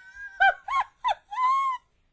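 A woman's high-pitched laugh: three short rising-and-falling squeaky notes, then a longer held one that stops just before the end.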